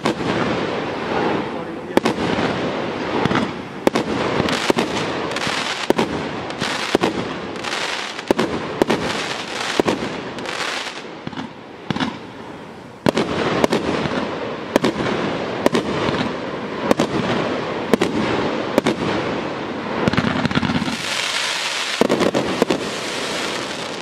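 A 30 mm consumer fireworks cake (TKPM815 "El Diablo", 35 shots) firing shot after shot, with a sharp bang about once a second and a dense crackle and hiss from the bursts between them. The shots ease off briefly about halfway through, then pick up again.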